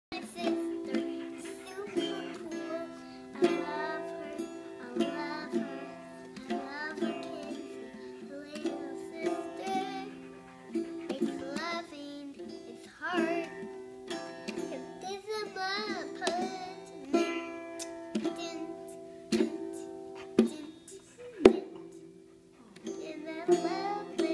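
A young girl singing while strumming a small toy acoustic guitar, the strummed chord ringing steadily under her wavering voice. A sharp tap sounds near the end, followed by a brief lull.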